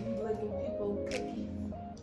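Background music: a stepping melody over a steady beat, with a sharp percussive hit about every second.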